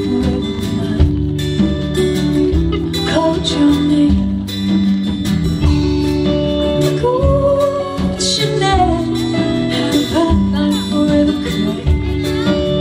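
Live band playing a song: acoustic and electric guitars over a drum kit, with a melody line that glides in pitch around the middle.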